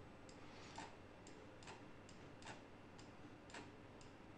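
Faint computer mouse clicks, about eight at roughly two a second, stepping a clip's duration value one frame at a time.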